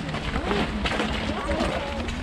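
Indistinct voices with footsteps on a gravel path.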